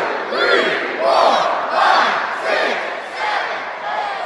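Arena crowd at a live wrestling show shouting and cheering, with loud yells rising and falling about once or twice a second.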